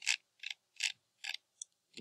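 Computer mouse clicking, four or five sharp clicks about 0.4 s apart, as the page is scrolled.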